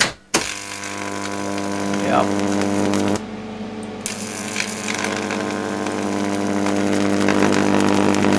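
Neon sign transformer switched on with a click and driving its high-voltage arc: a loud mains buzz with a hissing sizzle over it. About three seconds in, the sizzle drops out for roughly a second while the hum carries on, then returns. With its shunt removed, the transformer is drawing about ten amps, about twice the power it should.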